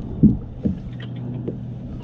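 Two dull knocks on a kayak hull, the first louder, about half a second apart near the start, followed by a few faint clicks.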